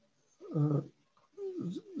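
A man's voice making two short wordless sounds, the second sliding down in pitch and back up: a hesitation in reading aloud, just before he repeats the phrase he was reading.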